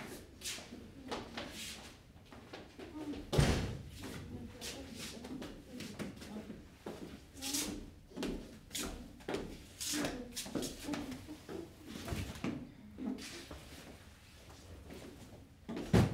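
Movement sounds in a room: footsteps, clothes rustling and a run of knocks and thumps. The loudest is a door-like bang about three and a half seconds in, with another sharp thump at the end.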